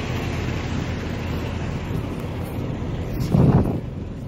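Steady low rumble of an idling delivery truck mixed with wind on the microphone, with a louder low whoosh near the end.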